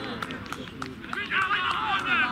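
Several young men shouting excitedly in celebration of a goal, their voices overlapping, with loud high-pitched yells starting about a second in. A few sharp clicks sound among the voices.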